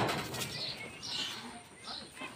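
The noise of a hard Muay Thai kick strike fading away in the first half-second, then a quiet stretch with a few faint, short, high bird chirps.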